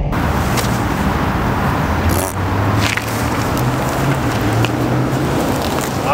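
A car under way: a steady low engine hum beneath loud, even road and wind noise, with a few brief sharp ticks.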